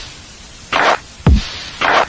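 Lo-fi electronic music: a beat of deep kick drums and noisy, hissy snares. The beat thins out for most of the first second, then a snare, a kick and a second snare come in.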